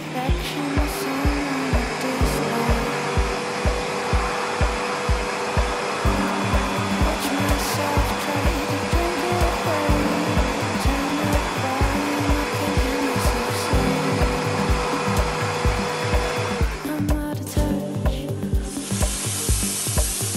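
Zepter Tuttoluxo 6SB Plus canister vacuum cleaner running as its floor nozzle is pushed over a rug: a steady motor drone with a thin whine, under background music with a steady beat. The motor noise drops away near the end, and a short hiss follows.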